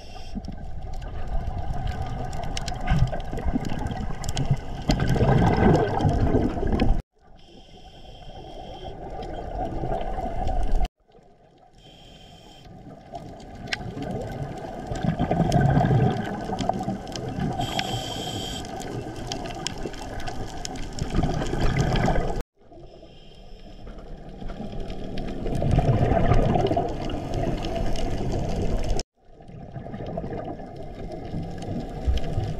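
Scuba regulator breathing heard underwater through the camera: exhaled bubbles gurgling and rumbling in surges every few seconds. The sound cuts off suddenly several times.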